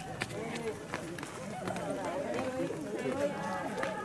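Several onlookers' voices talking and calling out over one another, none standing out clearly, with a few short sharp clicks.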